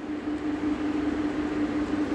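A steady background hum: one constant low tone under an even hiss.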